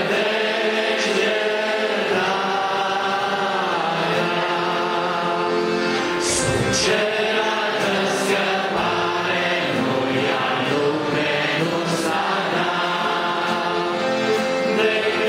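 A congregation singing a hymn together, many voices holding long notes.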